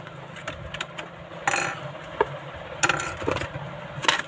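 Hard plastic packaging being handled: a clear blister tray crackles briefly about a second and a half in, among several sharp clicks as the plastic retaining discs holding a die-cast model car are twisted off.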